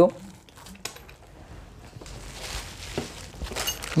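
Plastic packaging crinkling and rustling as a small bag of TIG welder consumables is handled. There are a few light clicks and knocks in the first second, and the rustling grows from about halfway through.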